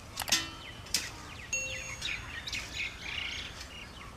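Birds chirping and calling in quick, short phrases, with two sharp knocks in the first second.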